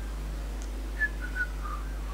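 A run of short whistled notes starting about halfway through, the first the highest and loudest, stepping down in pitch over about a second, over a steady low electrical hum.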